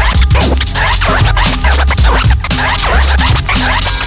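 Instrumental hip hop beat: a drum break over deep bass, with turntable scratching cutting in over the top.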